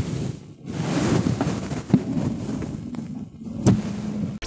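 Rustling, rumbling handling noise on the microphone, with a sharp knock about two seconds in and another near the end.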